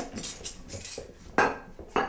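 Dishes and cutlery clinking as plates and a glass bowl are set down on a tiled countertop, with a sharp clatter about two-thirds of the way through and another near the end.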